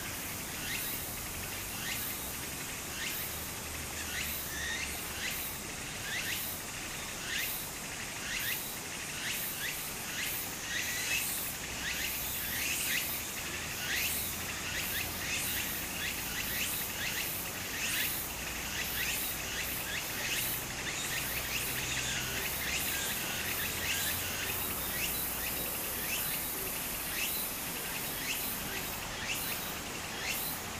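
Shallow stream trickling over a sandy bed, with cicadas calling at a steady level throughout.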